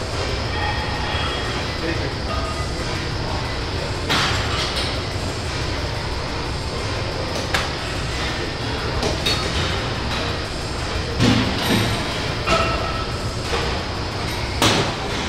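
Gym ambience: a steady din of background music and voices, broken by several sharp knocks.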